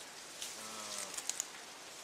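Forest undergrowth and leaf litter burning, with a faint crackling hiss and a couple of sharp pops past the middle.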